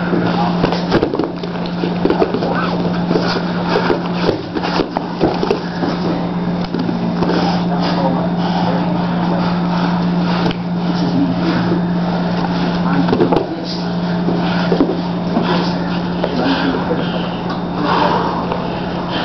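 Indistinct talking in a small room, mixed with scuffling and short knocks of bodies grappling on a mat, over a steady low hum.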